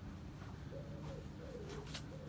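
A pigeon cooing, low soft notes in short repeated phrases that begin just under a second in.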